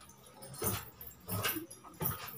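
Marker pen writing on a whiteboard: a few short strokes, the loudest two under a second apart.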